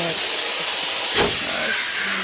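Steady loud hiss of steam from the Steam Yacht swingboat ride's steam engine as the boat swings, with a brief low thump about a second in.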